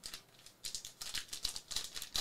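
Foil wrapper of a Panini Prizm football card pack crinkling and crackling as it is handled and torn open, a quick run of sharp crinkles starting about half a second in.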